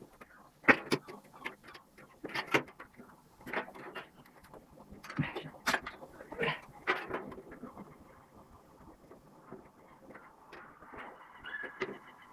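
Thin galvanized steel roofing sheet handled and bent by hand, giving a string of irregular sharp metallic clicks and knocks that thin out and grow fainter after about seven seconds.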